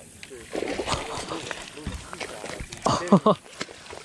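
A man laughing, with short voiced exclamations about half a second in and again near three seconds.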